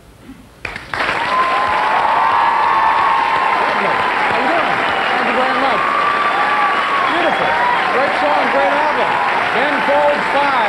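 A studio audience starts applauding and cheering about a second in, just after the last piano chord has faded, with voices whooping and shouting over the clapping.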